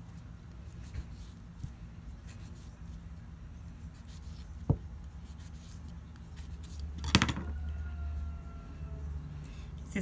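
Hands working a very ripe avocado in the kitchen: scattered small clicks and knocks, one sharp tap a little before five seconds in, and a louder rustling noise about seven seconds in.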